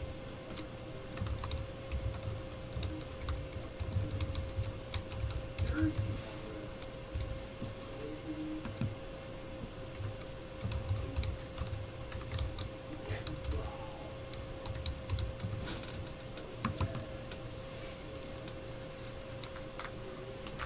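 Typing on a slim low-profile computer keyboard: quick, irregular key clicks and taps in short runs with brief pauses, over a faint steady background tone.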